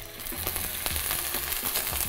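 Soy-marinated ribeye steaks sizzling in hot oil in a frying pan, searing. A dense sizzle swells up in the first half second and then carries on steady, with small pops and crackles through it.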